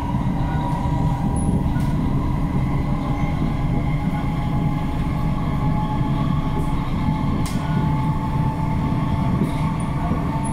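SMRT C151C metro train running at speed, heard from inside the carriage: a steady rolling rumble of wheels on track, with faint steady whining tones above it and a few light ticks.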